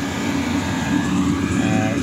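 Chinese diesel air heater running, a steady drone from its combustion blower and burner drawing in air.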